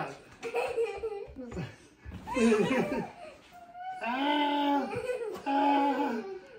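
A man laughing heartily about two seconds in, amid playful talk and a toddler's voice.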